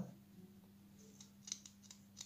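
Faint, scattered ticks and crackles of paper masking tape being handled and pressed onto a small transformer's winding, over a low steady hum.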